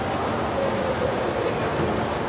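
Ice skate blades scraping and gliding on rink ice, a steady noise with faint scattered ticks, in the reverberant din of a large indoor hall.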